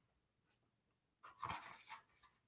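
Near silence, broken just past halfway by a short breathy noise lasting about half a second.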